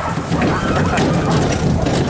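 A sled dog team running on gravel, pulling a wheeled cart: a steady low rumble of wheels crunching over gravel, with a quick patter of paws.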